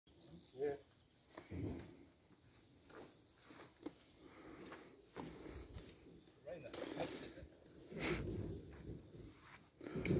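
Faint voices of people talking off-mic, with a few scattered clicks and knocks from handling.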